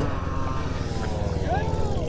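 Motorcycle engine idling with a steady, fast pulse, while a fainter engine note slides slowly down in pitch behind it.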